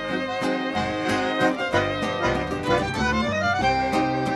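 Live folk ensemble playing: violin and button accordion over a low bass line. Near the end one note slides up and is held.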